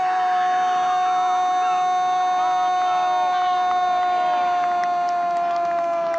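A Brazilian football commentator's long, held goal shout, one unbroken "Gooool" on a single high note that sinks slightly in pitch.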